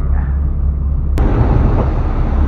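A fishing boat's engine rumbling low and steady. About a second in, an abrupt cut brings a broader rush of wind and churning wake as the boat runs under way.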